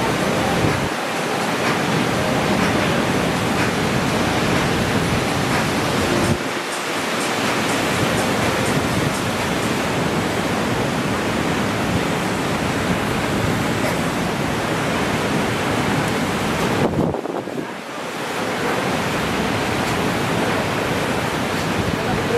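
Steady roar of ocean surf breaking on a reef, a loud, even rush of water noise that dips briefly about a second in, after about six seconds and again around seventeen seconds.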